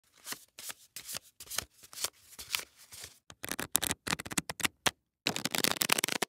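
Tarot cards being shuffled by hand: a run of short papery strokes, breaking into quick dense flurries about halfway through and again near the end.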